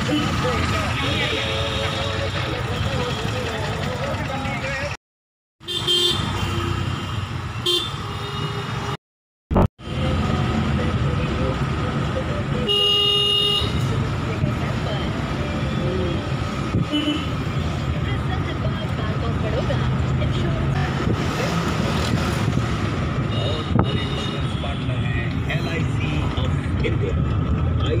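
Road traffic and a moving vehicle's steady rumble, with a vehicle horn honking once for about a second midway through. The sound cuts out twice briefly near the start.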